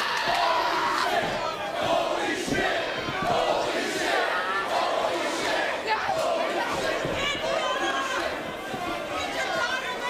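An arena crowd shouting and yelling, with a woman's screams among the noise.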